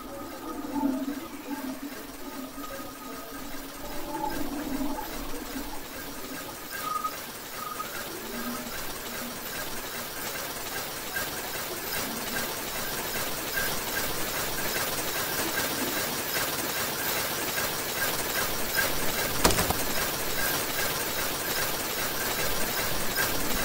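Ice cracking sound effects: a crackling hiss that grows slowly louder and brighter, with a few fading notes in the first several seconds and one sharp crack near the end.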